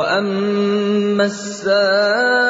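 A single voice chanting a Qur'anic verse in Arabic in melodic tilawah style, holding long steady notes, with a brief break a little past halfway before the next held note.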